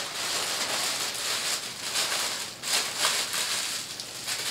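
A plastic bag rustling and crinkling as it is handled, with irregular bursts of crackle.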